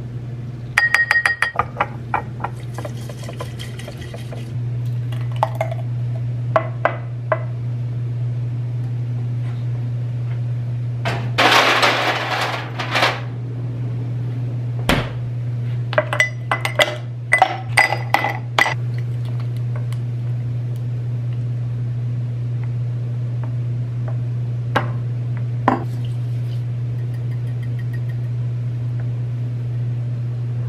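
Kitchen clinks: a metal spoon clinking against a matcha tin and ceramic bowl in the first couple of seconds, then a loud rush of noise lasting about two seconds, then a quick run of ringing clinks in a tall drinking glass, over a steady low hum.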